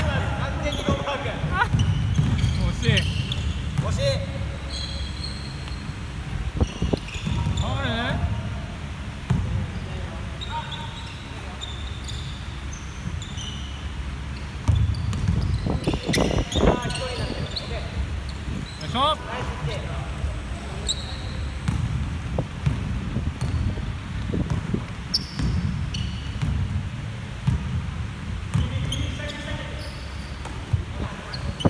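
A basketball bouncing and being dribbled on a wooden gym floor during a game, with sharp echoing impacts throughout. A few short squeaks, likely sneakers on the floor, come around a quarter and about halfway through, over scattered players' voices.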